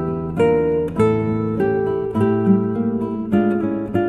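Background music: an acoustic guitar playing a run of plucked notes and chords.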